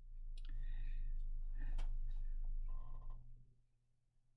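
Handling noise as a painted plastic model aircraft is lifted and moved up close: a low rumble lasting about three seconds, with a few light clicks, dying away near the end.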